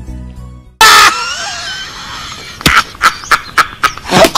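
Soft flute-like music is cut off about a second in by a sudden, very loud burst with a wavering, scream-like voice. Near the end comes a rapid run of sharp, loud hits, about four a second.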